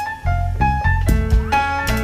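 Live jazz band music: a quick melodic line of separate, sharply struck or plucked pitched notes over sustained electric bass.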